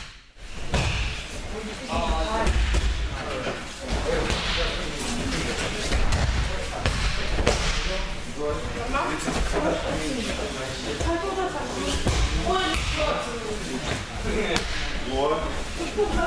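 Repeated heavy thuds of bodies being thrown and landing on judo mats, over indistinct voices in a large hall.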